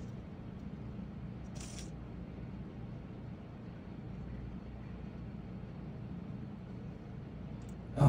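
Quiet room tone with a steady low hum, and one brief soft hiss a little under two seconds in.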